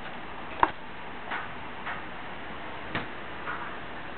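A few light, irregular clicks and taps, about five, the sharpest about half a second in, over a steady background hiss.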